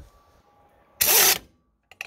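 Pneumatic impact wrench run in one short burst on a wheel lug nut, about a second in, followed by a faint click near the end.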